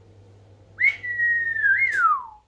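A person whistling one long note that starts about halfway through, sinks slightly, lifts briefly near the end, then slides down in pitch.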